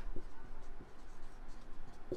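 Felt-tip marker scratching on a whiteboard in short irregular strokes as a word is written.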